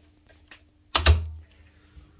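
Pump motor overload relay in an electrical control panel tripped with a screwdriver: one loud mechanical clack with a dull thud about a second in, after a couple of faint ticks, over a faint steady hum. It is a simulated trip test of the massage jet pump's protection.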